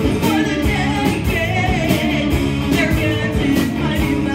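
Live rock band playing loudly: distorted electric guitars, bass guitar and a drum kit keeping a steady beat.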